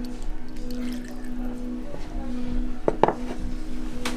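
Background music with steady held low notes. About three seconds in come a couple of sharp knocks, with another near the end: ceramic bowls being set down or moved on a wooden serving board.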